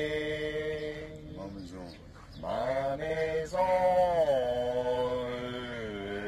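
A man singing long held notes into a handheld karaoke microphone, with no backing music. He sustains one note, breaks off about two seconds in, then sings a second phrase whose pitch drops and holds.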